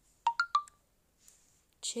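Three quick, short electronic beeps at different pitches, the second the highest, like keypad tones.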